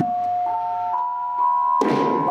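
Javanese gamelan beginning a piece: one instrument plays a short opening phrase of sustained notes, each a step higher than the last. Near the end the full ensemble comes in with drum strikes and many metal notes together.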